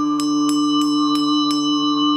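A small brass hand bell rung about five times, roughly three strokes a second, each stroke leaving high ringing tones that hang on. Underneath, a steady low drone note is held without a break.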